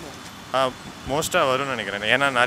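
A man speaking, in pitched phrases starting about half a second in, with street traffic noise underneath.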